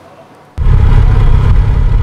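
Loud low rumble of outdoor field-recording ambience that starts abruptly about half a second in, after a brief near-quiet gap.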